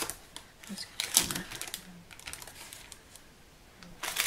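Plastic spatula scraping and knocking against a mixing bowl as thick fudge mixture is scraped out, in short, irregular clicks and scrapes, the loudest a little over a second in.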